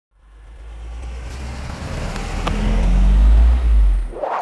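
A car speeding toward and past the camera, with a deep rumble that grows steadily louder from silence to a peak near the end, then cuts off.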